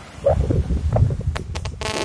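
Wind buffeting a phone's microphone outdoors, a steady low rumble, with a couple of faint vocal hesitation sounds and a few sharp clicks in the second half.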